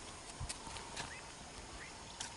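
Faint open-air ambience with a few short rising chirps and scattered sharp clicks.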